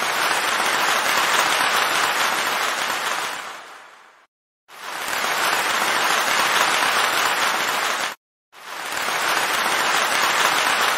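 Crowd applause, an even sound that fades out a little past three seconds in, comes back about a second later, and breaks off abruptly for a moment about eight seconds in.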